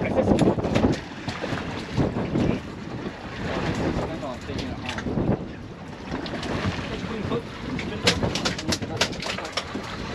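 Wind buffeting the microphone over the sound of an offshore center-console boat on open water, with indistinct voices. A quick run of sharp clicks comes near the end.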